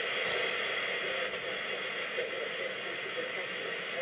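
Steady hiss of FM receiver static with no programme audio, as the emergency alert broadcast cuts off and the receiver hears only noise.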